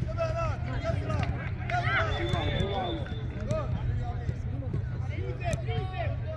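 Overlapping shouts and calls of players and spectators across a soccer pitch, no single voice clear, over a steady low rumble.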